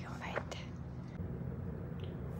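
A woman whispering a few words near the start, over a steady low hum.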